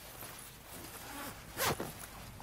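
Jacket zipper pulled in one quick, loud stroke near the end, after some soft rustling of the jacket's fabric.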